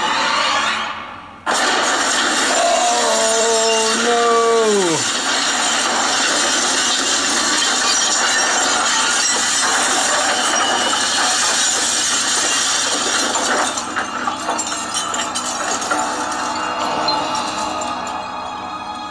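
Loud, continuous mechanical noise from the episode's soundtrack, with a brief drop about a second in. A pitched tone sounds over it for a couple of seconds and slides down as it ends.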